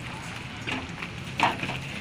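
Goats being lifted down from the caged bed of a pickup truck: a few short scuffling knocks, the loudest about a second and a half in, over a low steady hum.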